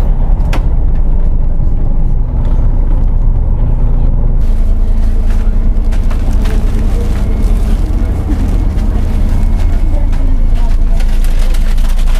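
Sleeper bus engine running, a steady low rumble heard from inside the cabin, with a few light knocks.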